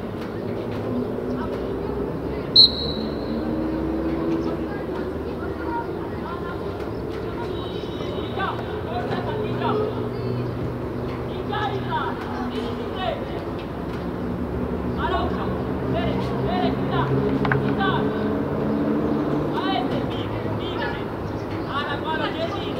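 Voices calling out across an open football pitch, with a low steady background rumble. About two and a half seconds in, one short sharp whistle blast stands out as the loudest sound.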